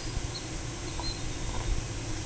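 Outdoor ambience: a steady hiss with an uneven low rumble, and a few faint, short high chirps.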